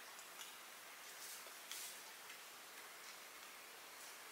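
A few faint, light ticks in near silence: fingertips tapping on a smartphone screen.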